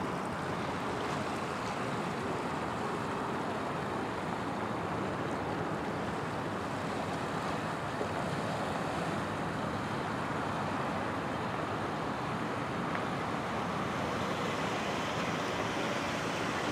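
Steady wind blowing: an even rushing noise with no distinct events.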